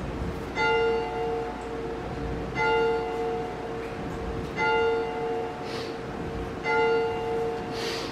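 Church bell rung by hand with a pull rope: four strokes about two seconds apart, each ringing on and fading before the next.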